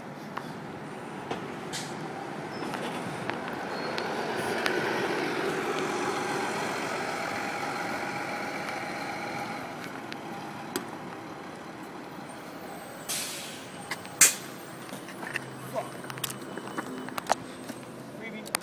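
A heavy road vehicle passes, its engine and road noise swelling over a few seconds and then fading. Near the end come a short hiss and a sharp knock, followed by a few lighter clicks.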